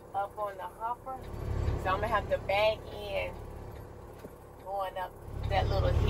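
Indistinct talk over the low rumble of a heavy diesel engine, which swells briefly about a second and a half in and grows louder again near the end.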